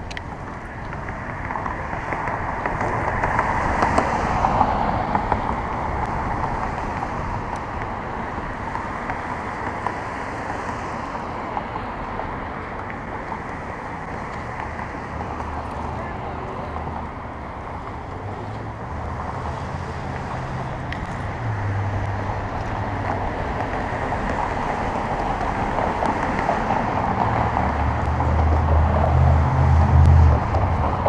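Wind rushing over a bike-mounted camera's microphone while riding through city streets, with passing traffic around. A low engine hum from a vehicle grows in the second half and is loudest near the end.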